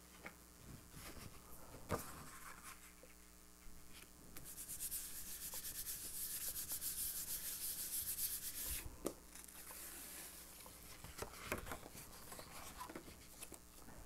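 A hand rubbing the back of a sheet of paper laid on an inked gel printing plate, burnishing it to lift a ghost print. It is a fast, even rasping for about four seconds in the middle, with paper rustles as the sheet is laid down before it and peeled off near the end.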